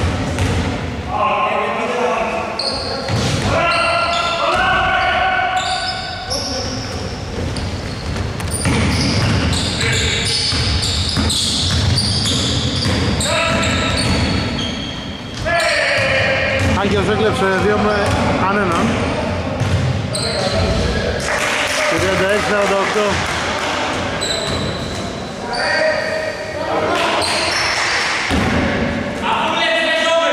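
Basketball bouncing on a hardwood gym floor during play, with players' shouts and calls ringing in the echoing sports hall.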